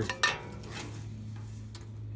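Handling noise from a bare boiler heat exchanger: one sharp metallic click with a short ring about a quarter second in, and a fainter tick near the end, over a low steady hum.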